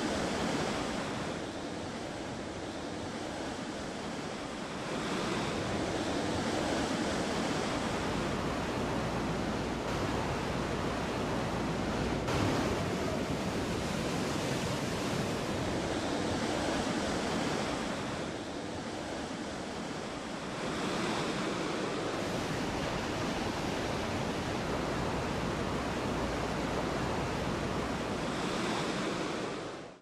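Artificial surf wave breaking in a wave pool: a steady rush of churning white water. It eases off briefly twice and fades out at the end.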